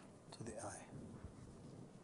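Faint, low muttered speech from a man, with two sharp taps near the start, over quiet room tone.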